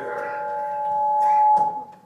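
Public-address microphone feedback: a steady ringing howl of a few pitches that swells louder for about a second and a half, then cuts off suddenly.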